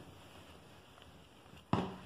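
Near silence: quiet room tone, broken shortly before the end by one brief, sudden sound.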